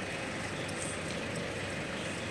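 Steady background street noise on a town street, an even hum with no distinct event standing out.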